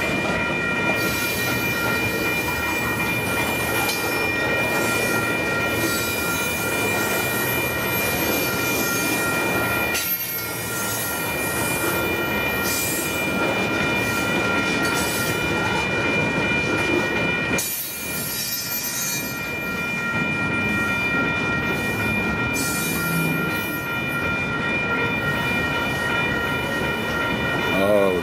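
Loaded freight cars of a slow-moving train rolling past: a steady rumble of steel wheels on rail, with a continuous high-pitched squeal above it. The sound eases briefly twice.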